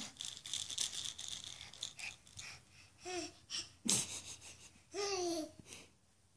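A baby babbling in short vocal sounds: a brief one about three seconds in and a longer, falling one about five seconds in. Rustling and clicking run through the first two seconds, and there is a sharp knock just before the four-second mark.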